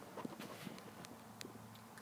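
Faint quiet inside a vehicle cabin with a low steady hum and a few light clicks, the sharpest about one and a half seconds in.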